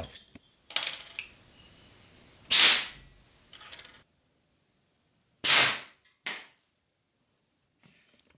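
CO2 fire extinguisher, pressurised at about 850 psi, discharging through a hose into a launch pipe to fire a straw: two short, sharp blasts of gas about three seconds apart, the second followed by a smaller burst.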